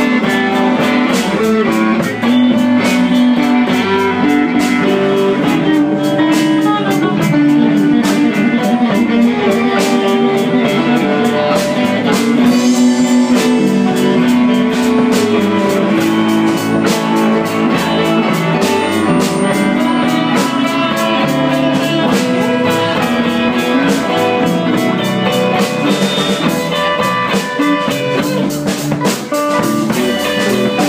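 Live blues band playing an instrumental passage: electric guitar taking the lead over a drum kit keeping a steady beat.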